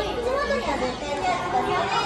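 Children's voices and people chattering, several voices overlapping in a busy room.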